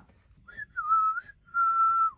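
A person whistling a short tune through the lips: a few gliding notes, the last one held for about half a second.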